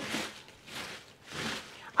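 Hands sweeping dry, crushed bread crusts across a cloth into a heap: about three short, dry rustling scrapes.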